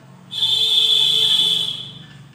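Felt-tip marker squeaking on a whiteboard as a word is written: one high, steady squeal, starting about a third of a second in and lasting about a second and a half.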